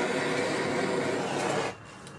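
Handheld gas torch running with a steady hiss as its flame re-melts the top layer of a gel wax candle. It cuts off suddenly near the end.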